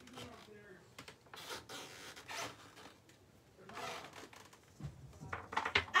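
Faint scratching and rustling of craft materials being handled on a work table, with a few soft knocks near the end.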